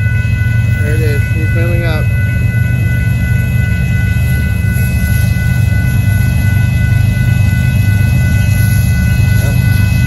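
A Union Pacific mixed freight train rolling through a grade crossing: a steady, loud low rumble of the cars on the rails, with several steady high tones ringing over it. Short pitched calls that rise and fall come about one and two seconds in.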